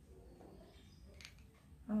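A plastic lotion pump pressed by hand, giving one faint short click about a second in against low room noise, followed near the end by a short spoken 'oh'.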